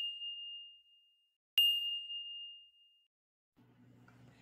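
A high, bell-like ding: the ring of a strike fades out early on, then a second sharp strike about a second and a half in rings at the same single high pitch and fades away over about a second and a half.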